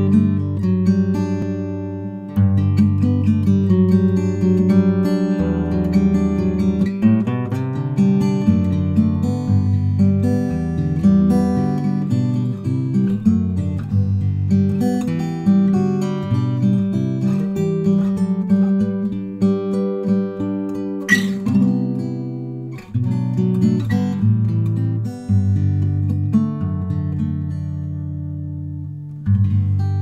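Wildwood Brown-G acoustic guitar played fingerstyle, with a moving bass line under a plucked melody. A single sharp percussive click cuts through about two-thirds of the way in.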